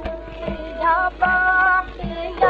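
Hindustani classical music from a 1935 78 rpm shellac record of a ghazal in Raag Yaman: a held melody line of long notes that steps up to a higher note about a second in, over light drum strokes, with the narrow, dull sound of an old record.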